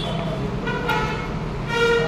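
Two short vehicle-horn toots, one about half a second in and a louder one near the end, over a steady low hum.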